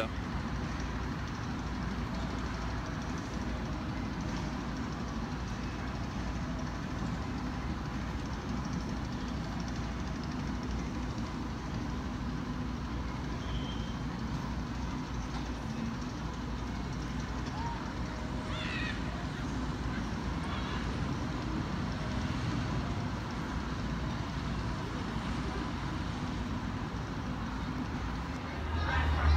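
Steady outdoor background noise with a low rumble and no distinct events, and faint distant voices briefly about two-thirds of the way through.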